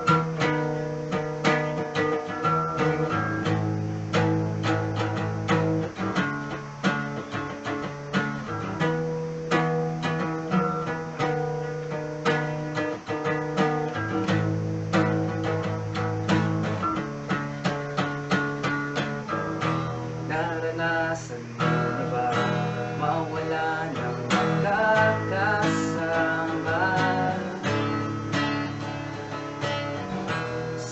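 Steel-string acoustic guitar strummed and picked in a steady rhythm, playing chords.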